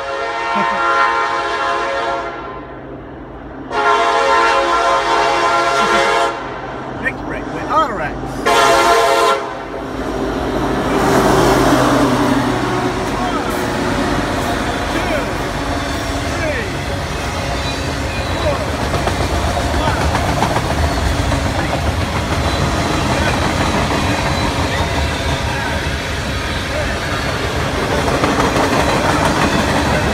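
Norfolk Southern freight train's diesel locomotive horn blowing a series of blasts, two long ones then shorter ones, over the first ten seconds. Then the locomotives pass loudly and the train settles into a steady rumble and clickety-clack of freight cars rolling by on the rails.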